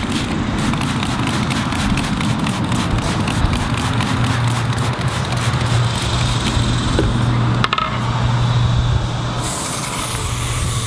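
Squirts of degreaser from a plastic trigger spray bottle over a steady low hum. About nine and a half seconds in, a garden hose spray nozzle opens with a hiss of water.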